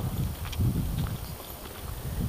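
Footsteps on a woodland path, with wind and handling noise on a handheld camera's microphone: an uneven low rumble with a few faint clicks.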